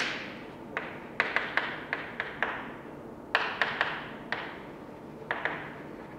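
Chalk striking and tapping on a blackboard as a diagram is drawn: about fourteen sharp, irregular taps, each followed by a short room echo.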